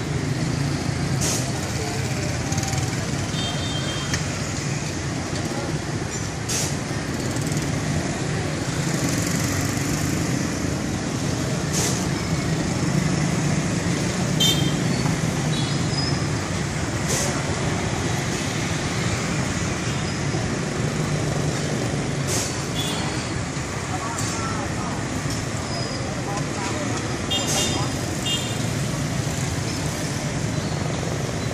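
Busy intersection traffic: motorbike and car engines passing in a steady stream, with brief high horn beeps now and then and voices in the background.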